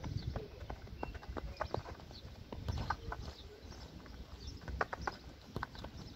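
Outdoor wind rumble on the microphone, with scattered sharp clicks and knocks at irregular intervals.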